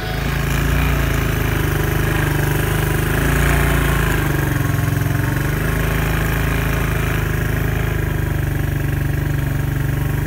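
ATV engine running steadily while riding along a trail, its pitch shifting a little around the middle.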